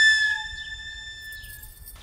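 A single held flute note in the background score, loud at the start and then fading out over about a second and a half.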